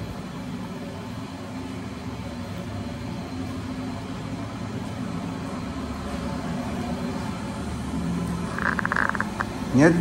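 Steady low hum of a working kitchen, with a short burst of rapid clicking clatter near the end.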